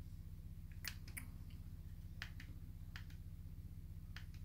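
Several faint, sharp clicks of remote-control buttons being pressed, spread over a few seconds, over a steady low electrical hum.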